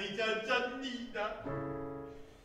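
Male operatic voice singing with piano accompaniment, wavering in pitch and settling into a held note near the end.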